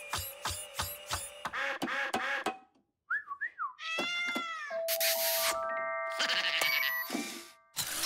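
Cartoon soundtrack: a rocking toy duck squeaks in an even rhythm, about three times a second, over music for the first two and a half seconds. A cartoon cat's wavering, gliding cat-like vocalising follows, then a run of stepped musical sound-effect tones.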